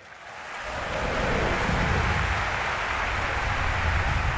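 Large audience applauding at the end of an opera aria, swelling over about the first second and then holding steady.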